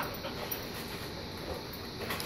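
A dog giving a brief whimper right at the start, followed by low background noise with a couple of faint taps.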